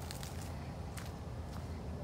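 Faint footsteps on a dirt path strewn with dry leaves, with a couple of light crunches, over a steady low rumble on the microphone.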